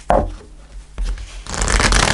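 A deck of oracle cards being handled and shuffled on a cloth-covered table. There are two short knocks, then a loud burst of riffling as the two halves are shuffled together near the end.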